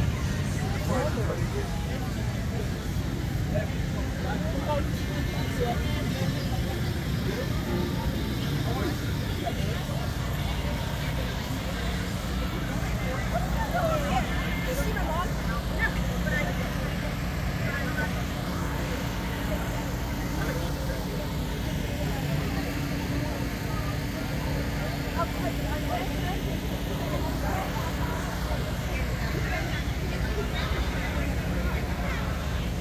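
Steady low engine hum from parked food trucks, under indistinct crowd chatter.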